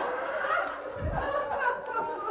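Metal tongs clicking as pieces of fried chicken are lifted out of a frying pan onto a plate, with a soft thump about a second in. Faint talk runs underneath.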